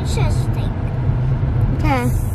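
Steady low road and engine rumble heard inside a moving car's cabin, with a child's voice breaking in briefly just after the start and again near the end.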